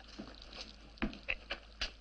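A quiet pause broken by four short, faint clicks or taps, spread over less than a second starting about a second in.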